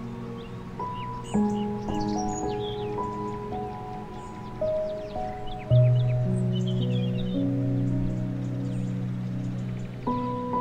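Slow, calm background music of long held notes, with birds chirping over it; a deeper held note comes in a little past halfway and is the loudest part.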